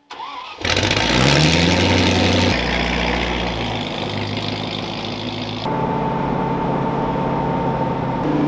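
Land Rover Discovery 1's 3.9 V8 starting after months parked up: it catches about half a second in and revs up briefly, then runs steadily. Near the end the sound cuts to the engine running on the move.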